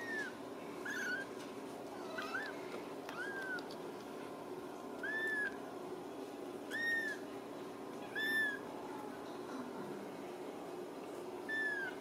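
Ragdoll kittens mewing: about eight short, high-pitched mews, each rising then falling in pitch, at irregular intervals, the loudest around the middle. A steady low hum runs underneath.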